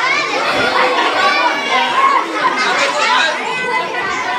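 A crowd of schoolchildren talking and calling out all at once, a dense, continuous babble of many overlapping young voices.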